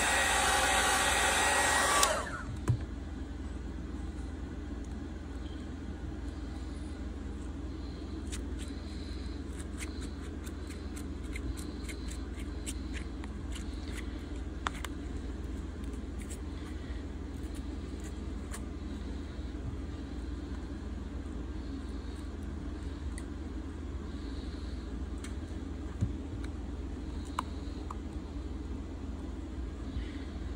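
Handheld hot-air heat gun blowing, softening the adhesive under a phone's back glass; it cuts off suddenly about two seconds in. After that only a low steady hum remains, with scattered faint ticks and scrapes as a thin metal blade and a plastic pick are worked under the glass.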